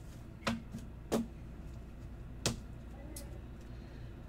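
Three sharp plastic clicks and taps, spread over the first few seconds, as hard plastic card holders are picked up off a table and handled, over a low steady hum.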